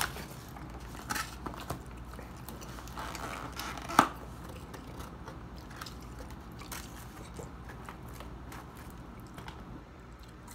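Paper takeout bag and food wrappers handled close to the microphone, crinkling with many small ticks, and one sharp click about four seconds in; chewing is mixed in.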